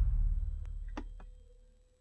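Deep sub-bass boom from a synthesized drum-like patch: low Symphobia pizzicato strings, detuned and low-pass filtered so only the sub frequencies come through. It dies away over about a second and a half, with two faint clicks about a second in.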